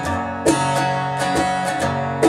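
Acoustic guitar strummed: a strong strum about half a second in, with the chord ringing on under lighter strokes.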